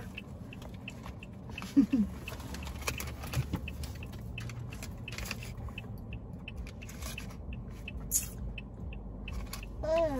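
A car's hazard-light flasher ticking steadily, about three ticks a second, over a low steady hum inside the parked car's cabin, with a few scattered knocks.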